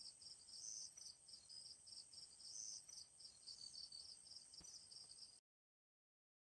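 Faint chorus of crickets at night: a high-pitched chirp pulsing about four times a second over a steady, still higher trill. The sound cuts off suddenly shortly before the end.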